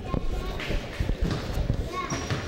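Footsteps of players walking on a hardwood gym floor, a run of irregular low thuds, with faint voices echoing in the gym.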